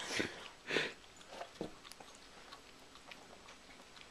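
Border Terrier licking at the air, her tongue and lips making short smacking sounds: two clearer bouts in the first second, a few small clicks around a second and a half in, then only faint ticks.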